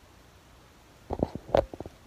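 A short low gurgle about a second in: a quick run of rough pulses, after a near-silent pause.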